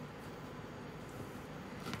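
Faint steady room tone with no distinct sound events.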